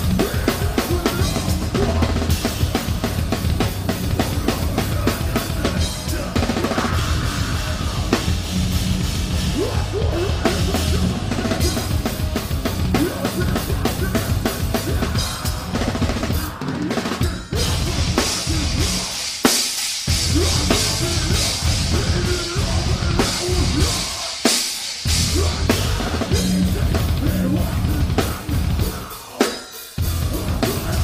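A metal band playing live, heard from a microphone right at the drum kit: the drums are loud and close, a 22-inch bass drum, copper snare and cymbals struck fast over the band. The band cuts out briefly twice in the second half and again just before the end.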